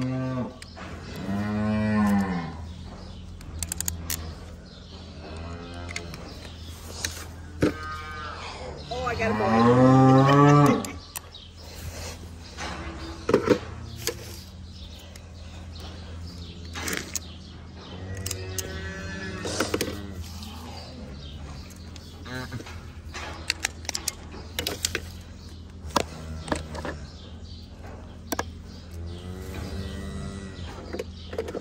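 Cattle mooing: several drawn-out calls a few seconds apart, the loudest about ten seconds in. Scattered clicks and knocks and a steady low hum run between the calls.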